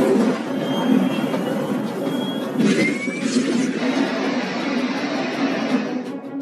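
Cartoon action sound effects: a dense, continuous rushing roar with music underneath, and a short rising whistle about three seconds in.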